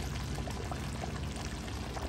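Thick sauce piquante gravy bubbling at a steady simmer in a large pot, with a stream of small pops and blips.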